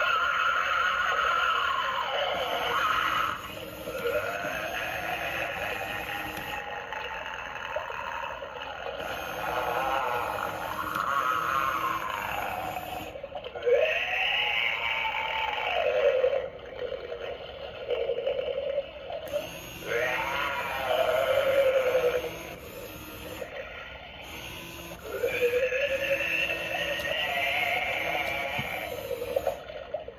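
Animatronic Halloween zombie prop playing its eerie sound effects through a small built-in speaker: a run of gliding tones that rise and fall, thin and tinny, in phrases with short breaks between them.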